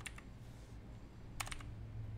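A brief cluster of keystrokes on a computer keyboard, about one and a half seconds in, over a low steady hum.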